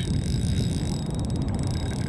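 Spinning reel's drag clicking rapidly from about a second in as a hooked sturgeon runs and strips braided line off against the drag, over a low wind rumble on the microphone.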